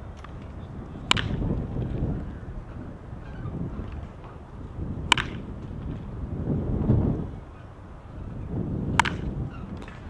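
A baseball bat hitting pitched balls: three sharp cracks about four seconds apart, each with a brief ring.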